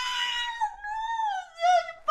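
A woman's voice making a long, high-pitched wordless whine that slowly falls in pitch, broken off near the end.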